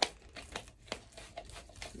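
A plastic trigger-sprayer top being screwed onto a plastic spray bottle: a sharp plastic click at the start, another just before a second in, and light plastic ticking and rattling in between.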